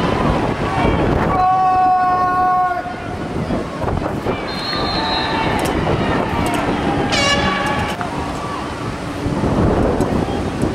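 Open-air stadium sound at a lacrosse game: wind buffeting the microphone over crowd noise. A horn sounds for about a second and a half near the start, a short high whistle comes around the middle, and a second, brighter horn blast follows about seven seconds in.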